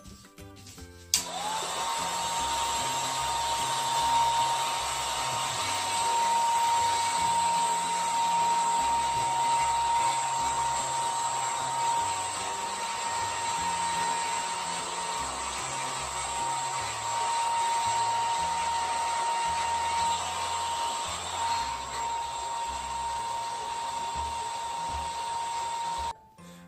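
Handheld hair dryer switched on about a second in and then running steadily: a rush of blown air with a steady high whine.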